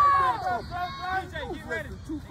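Several voices shouting and calling out over one another, with one loud drawn-out shout near the start.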